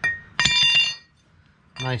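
Short metallic clink with a brief ring as the steel clutch release fork and throw-out bearing are handled out of the transmission bell housing.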